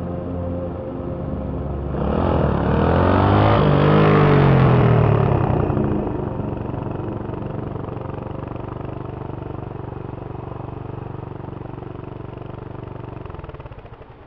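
Single-cylinder four-stroke engine of a Suzuki GN250 motorcycle ridden past close by. It is loudest about four seconds in, its note dropping in pitch as it goes by, then fading away, over steady background music.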